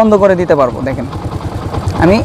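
Motorcycle engine idling with a steady low putter under a man's voice in the first second.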